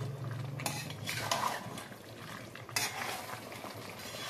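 Spatula scraping and stirring chicken pieces and potatoes through a thick masala in a steel kadai, with the masala sizzling as it fries down. There are two main scraping strokes, about a second in and near three seconds.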